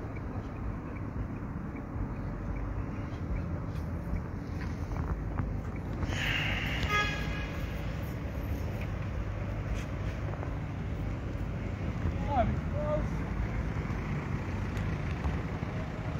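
Street traffic rumbling steadily, with a car horn sounding once, for about a second, roughly six seconds in.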